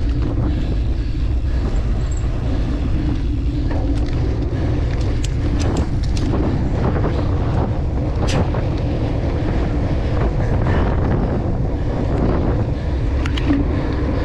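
Steady wind rush and low rumble on the microphone of an action camera riding on a cyclocross bike at race speed, broken by a few sharp clicks and knocks.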